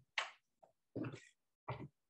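A few short, faint bursts of a person's voice, like murmured fragments of words, with silence between them.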